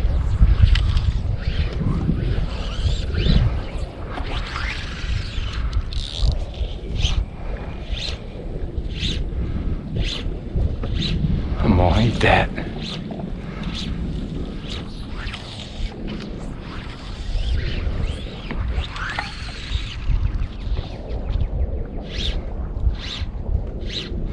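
Wind buffeting the microphone on open water, a steady low rumble, with a string of short, sharp swishes about once a second.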